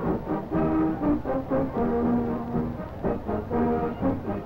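High school marching band playing: brass carrying the tune over drum strokes, with a long low note held about two seconds in.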